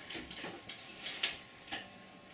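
Scattered soft clicks and taps from the musicians' instruments on stage, irregular and not in rhythm, with no music playing; the loudest tap comes a little past a second in.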